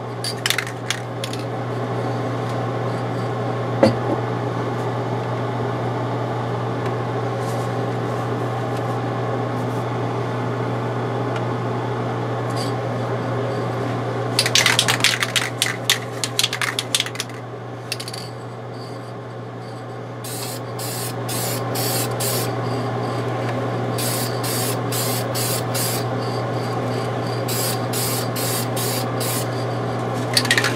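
Aerosol can of adhesion promoter spraying in long hissing passes over a steady spray-booth fan hum. Midway there is a brief clatter of clicks and a lull, then the spraying resumes in many short bursts.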